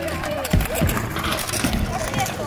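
BMX bike landing hard on concrete about half a second in, a single heavy thud, then the bike rolling on with a few lighter knocks.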